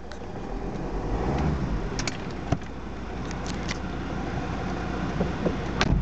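Volvo V50 D5's five-cylinder turbodiesel idling steadily just after a cold start, heard from inside the cabin, with a few light clicks.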